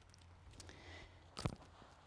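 Quiet outdoor background with a faint low hum, broken by one short soft sound about a second and a half in.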